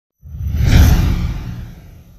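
A whoosh sound effect with a deep rumble beneath a broad hiss. It swells in suddenly about a quarter of a second in, peaks just before the first second, then fades away.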